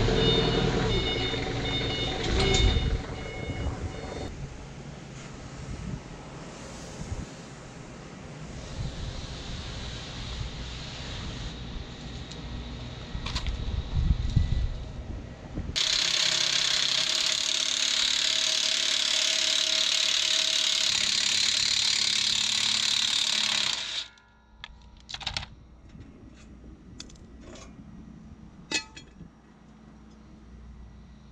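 A cordless power tool run on the boat trailer's steel frame: one steady loud run of about eight seconds in the second half, starting and stopping abruptly. Before it come clanks and rattles of metal parts being handled, and a few sharp clicks follow it.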